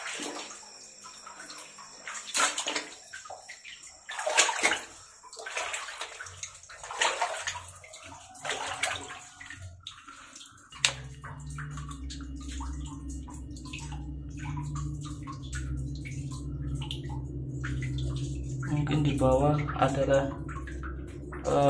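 Water sloshing and splashing irregularly as people move through floodwater in a cave passage. About halfway through, a steady low hum sets in beneath the splashing.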